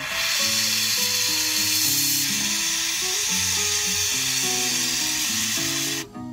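Jeweller's gas torch burning with a steady blue flame, hissing loudly, over soft guitar music.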